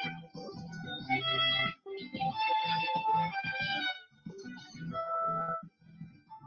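Solo violin music played live, in short melodic phrases broken by brief pauses about two and four seconds in, sounding thin through a video-call audio feed.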